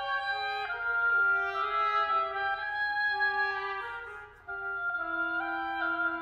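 Two oboes and a cor anglais playing chamber music in overlapping held notes that move in steps. The playing briefly fades almost out about four seconds in, then resumes.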